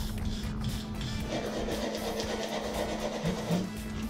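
Wire brushes scrubbing rust and dirt off the housing and armature of an old Delco-Remy heavy-duty starter, a fast rough scratching, under background music.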